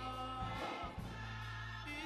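Gospel choir singing with instrumental accompaniment: held sung notes over a steady bass.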